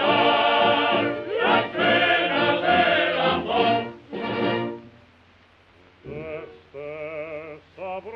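Music from a 1927 opera recording with a dull, narrow old-record sound: singing with orchestra, full and loud, breaks off about four and a half seconds in for a second of near silence. Then a single singer with wide vibrato comes in over lighter accompaniment.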